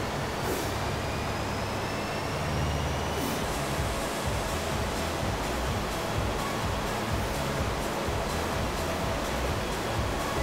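A steady rushing background noise, even and unbroken, with an irregular low rumble beneath it.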